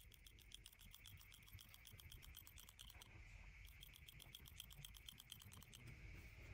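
Manual squeeze-handle hair clippers cutting hair at the nape, faint and rapid: about nine clicks a second as the blades snap shut, in two runs with a short pause about halfway through.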